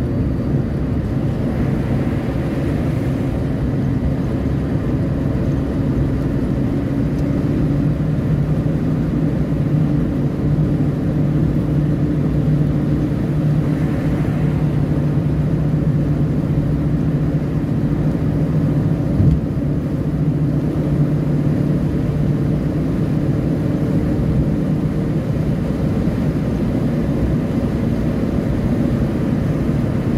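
Inside a moving car on a highway: a steady drone of engine and tyre noise at cruising speed, with one brief click about two-thirds of the way through.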